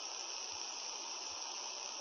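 Steady, even hiss of the recording's background noise, with no other sound in it.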